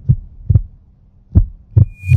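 Intro sound effect: four deep, heartbeat-like bass thumps in two pairs over a low hum.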